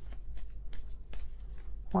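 A deck of tarot cards being shuffled by hand: a quick, irregular run of soft card flicks and snaps.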